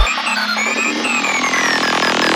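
Forest psytrance track at a breakdown: the kick drum and bass drop out at the start, leaving a buzzy synth drone with falling synth sweeps above it. The sound grows brighter toward the end.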